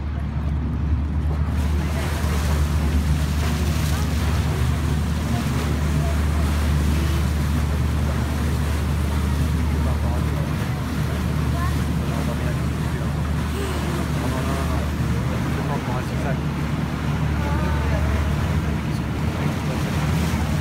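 Sightseeing boat's engine droning steadily, with wind rushing over the microphone and water washing past the hull. Faint passenger voices come and go.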